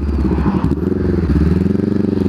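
Honda CB500X's 471 cc parallel-twin engine running under way, heard through an aftermarket R9 exhaust; its note dips briefly just under a second in, then climbs gently.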